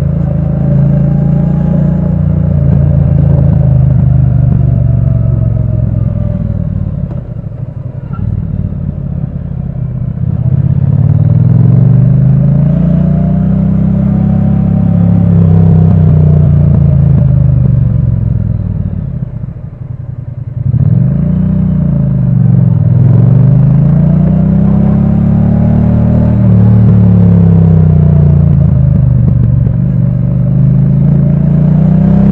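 Triumph Bonneville T100 parallel-twin engine and exhaust heard from on board while riding, its note repeatedly climbing and falling as the bike accelerates and slows. The engine drops low and quieter about a third of the way in and again about two-thirds in, each time picking up again with a sharp rise.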